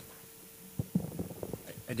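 Quiet conference-room tone with a faint steady hum. From about a second in come faint, muffled low sounds like off-microphone voices, and a man starts speaking into the microphone at the very end.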